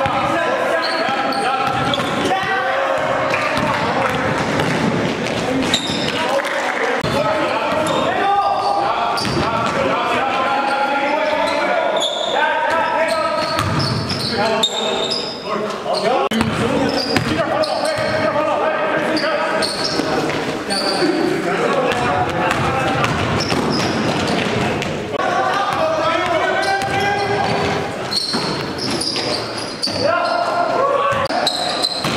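Sounds of a basketball game in a gym: a basketball bouncing on the court, with players' and onlookers' voices, echoing in the large hall.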